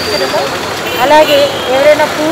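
Speech: a voice talking steadily, with no other distinct sound standing out.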